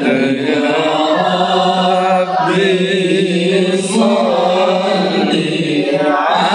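Sholawat: Arabic devotional chanting in praise of the Prophet Muhammad, voices singing long, gliding melodic lines.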